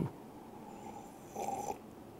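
A man drinking coffee from a mug: quiet sipping, then a short, low throat sound about one and a half seconds in as he swallows.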